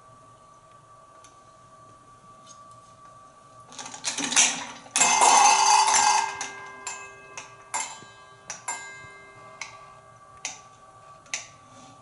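African grey parrot clambering over a wooden play perch: scattered sharp clicks of beak and claws on the wood. About four seconds in comes a loud burst of rustling and clattering, with a metallic ringing that fades over the next few seconds.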